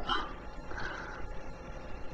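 Faint squeak of a marker writing on a whiteboard, one short smeared squeak about a second in, over low room hum.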